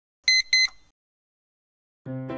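Two short electronic beeps in quick succession, a steady high pitch, about a quarter second apart, used as an edited-in sound effect.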